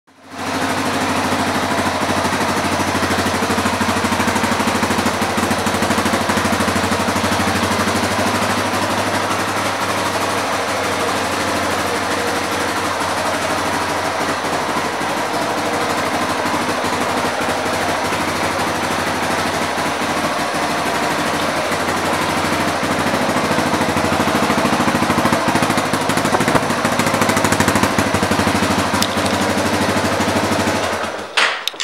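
Yamaha TT-R230's air-cooled single-cylinder four-stroke engine idling steadily, a little louder in the last few seconds.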